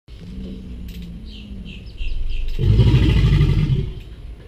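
American alligator bellowing during breeding season: a low rumble builds about halfway in, then one loud, deep bellow lasting a bit over a second that stops just before the end.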